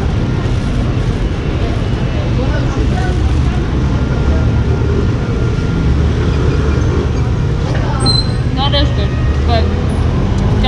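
City street traffic: cars and motor scooters passing close by, a steady low rumble, with a few brief voices near the end.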